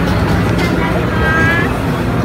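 Busy street-festival crowd ambience: a steady low rumble under background chatter, with a short high-pitched voice about a second and a half in.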